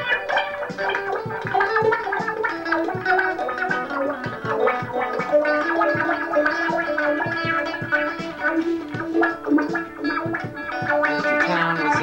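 Electric guitar playing a busy line of quickly picked notes, some of them held longer in the second half.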